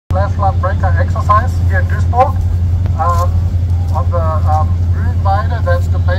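A man speaking, amplified through a handheld microphone, over a steady low hum.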